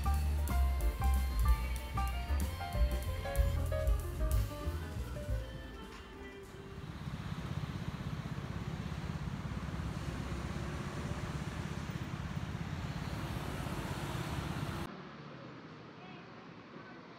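Background music with a drum beat for the first five seconds or so, fading out; then steady city road traffic noise from passing cars, which cuts off suddenly near the end to a quieter background.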